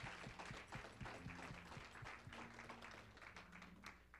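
A congregation applauding: faint, many quick claps that fade toward the end.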